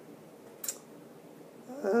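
A single brief, faint click from a concealer tube being handled in the hand, against quiet room tone.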